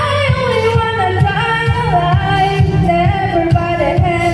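A girl singing a wavering, gliding melody into a handheld microphone over a pop backing track with a steady beat.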